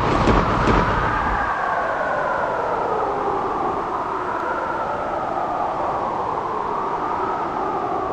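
Dramatic background-score drone: sustained synthesised tones that slowly waver up and down in pitch. A low boom from a dramatic hit fades out in the first second and a half.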